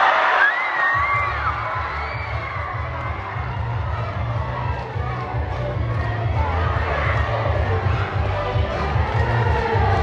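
Large audience cheering and shouting together, many young, shrill voices, with a few high screams standing out in the first second or two. A steady low rumble runs underneath from about a second in.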